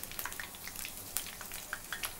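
Hot oil sizzling and crackling with many small pops as onion pakodas deep-fry in a kadai.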